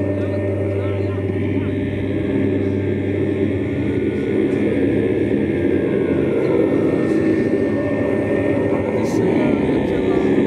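Live drone-metal performance: loud, sustained, heavily amplified electric guitar drone with thick low notes, with a chanted voice over it. A deep low note drops out about a third of the way in, and the drone carries on without a break.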